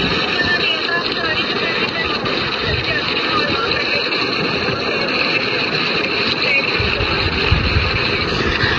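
A steady rushing noise throughout, with a woman's voice speaking faintly over the video call, heard through the phone's speaker.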